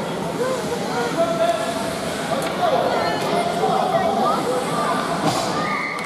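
Many overlapping voices at an ice hockey rink: spectators and players talking and calling out, none clear enough to follow.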